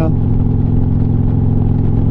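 Harley-Davidson Street Glide's V-twin engine running steadily at cruising speed, with wind and road noise on the microphone.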